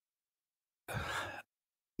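A single short breath into the close microphone, about half a second long, a second in.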